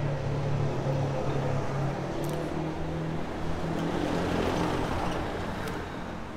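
A road vehicle's engine running nearby: a steady low hum over road noise, easing off slightly near the end.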